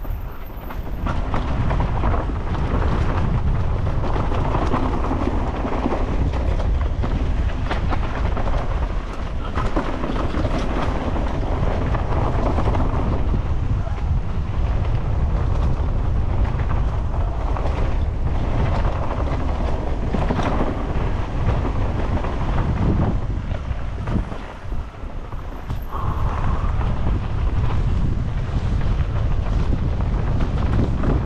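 Mountain bike rattling and knocking steadily as it rides down a rough, rocky trail strewn with dry leaves, with tyres crunching over the ground and wind rushing on the microphone; the racket eases briefly about three-quarters of the way through.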